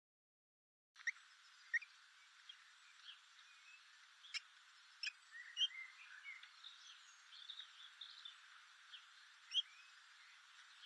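Faint outdoor background hiss with scattered short, high bird chirps and calls, starting about a second in; a few chirps stand out louder, one near the end.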